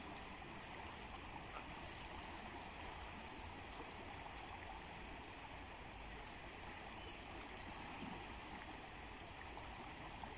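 River water flowing steadily: a faint, even rush.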